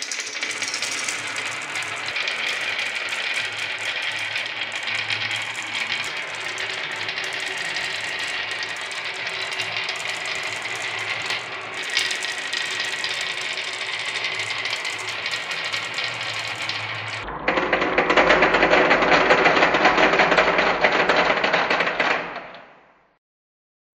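A stream of marbles rolling and clattering down the wavy groove of a wooden HABA slope board, a dense continuous rattle. About seventeen seconds in it changes abruptly to a louder, fuller rattle as the marbles pour into a plastic toy garage.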